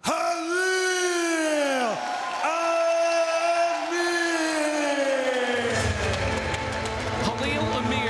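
Music: long held, layered tones that slowly sink in pitch. A deep low rumble joins near the end.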